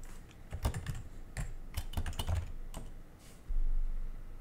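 Computer keyboard being typed on, a run of separate keystrokes entering a web address. A short low rumble follows near the end.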